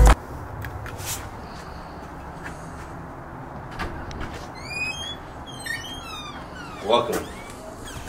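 A front door being unlatched and opened, with a few faint clicks over a steady low background rumble. Two short runs of high, quickly sweeping chirps come partway through, and a brief voice sounds near the end.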